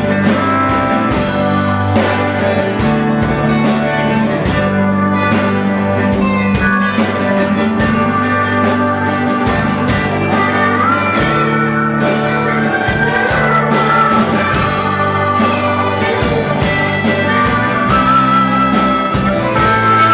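Live band playing an instrumental break of a blues-rock song: drums, acoustic guitar, bass and keyboard, with horns. A held melodic lead line comes in about halfway through.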